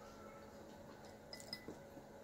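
Near-quiet room with a few faint clinks of chopsticks against a bowl about one and a half seconds in.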